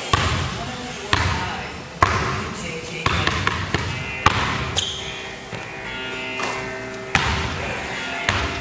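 A basketball being dribbled on a hardwood gym floor: sharp bounces about once a second, a few coming quicker in the middle, each echoing briefly in the large hall.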